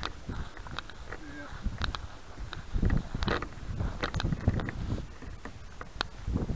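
Wind buffeting a small keychain camera's microphone, an uneven low rumble, with scattered clicks and knocks from the model plane being handled.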